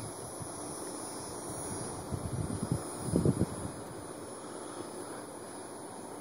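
Wind noise on a phone microphone held outdoors, a steady hiss with a few brief rustling bumps about two to three and a half seconds in.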